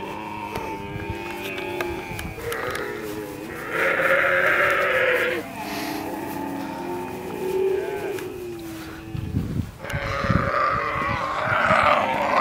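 Dromedary camels calling at a feeding trough: long, drawn-out calls, with one louder, harsher call about four seconds in.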